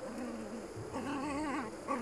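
Yorkshire terrier whining as it digs: a short whine at the start, then a longer wavering whine about a second in.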